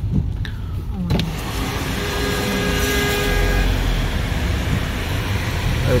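Car cabin road noise on a rain-wet highway. About a second in, the noise of tyres on wet road and passing traffic swells suddenly and stays loud as the side window is opened.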